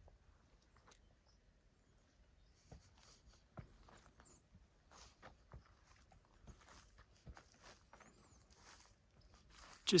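Very quiet woodland ambience, faint, with scattered light clicks and rustles and a faint high chirp near the end.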